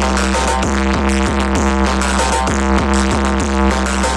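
Electronic dance music played loud through a tall Chandana DJ speaker stack at a sound check, with a steady beat over a deep, unbroken bass.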